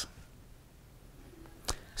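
Quiet room tone with one short, sharp click near the end.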